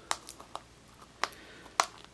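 Small hard-plastic case being handled in the fingers: five sharp clicks and taps spread over about two seconds, the loudest near the end.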